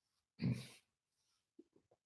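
A man's short, breathy vocal sound about half a second in, followed by a few faint clicks near the end.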